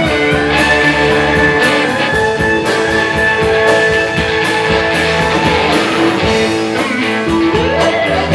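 Live blues band playing an instrumental passage on pedal steel guitar, bass, electric guitars and drums. Long held notes throughout, with gliding pitch bends near the end.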